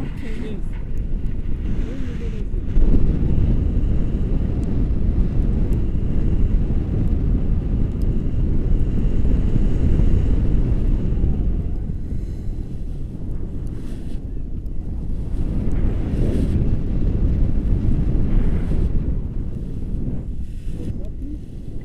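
Wind from a tandem paraglider's flight buffeting an action camera's microphone: a heavy, steady rumble with a louder gust about three seconds in.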